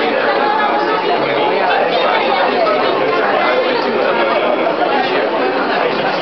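Steady chatter of many people talking at once, overlapping voices with no single one standing out, echoing in a large hall.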